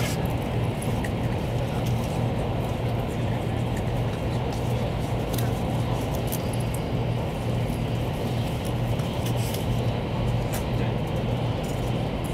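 Interior noise of a Taiwan High Speed Rail 700T train running at speed: a steady low hum and rumble of the rolling train heard inside the passenger car, with a few faint clicks.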